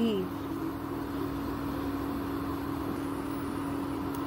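Induction cooktop running with a steady low hum under a faint hiss.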